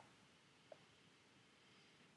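Near silence: room tone, with one faint tick about three-quarters of a second in.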